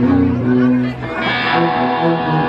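Slow song played live by a band: an upright bass bowed in long held notes under electric guitar. The music brightens a little past halfway through.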